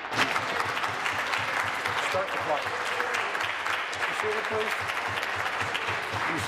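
A crowd of legislators applauding, many hands clapping densely, with a few voices calling out in the clapping.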